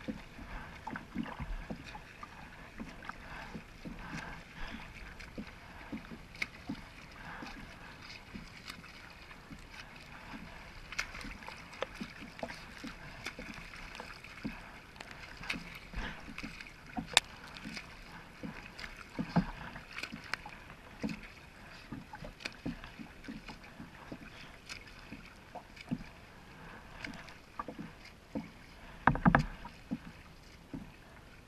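Choppy lake water lapping and splashing around a kayak, with irregular small splashes and knocks throughout and a louder cluster of splashes near the end.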